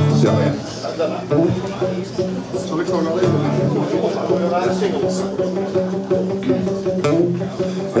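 Live acoustic guitars strumming a song's intro.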